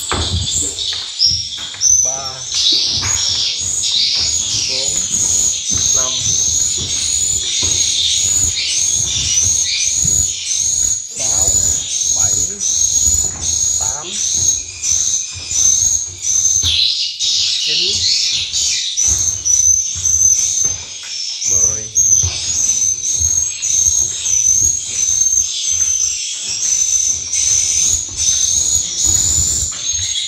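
Recorded swiftlet calls played through horn tweeters: a steady, rapidly repeating high chirping, about two chirps a second. This is the lure call used to draw swiftlets into a nesting house. Low knocks and rumbles from handling come underneath.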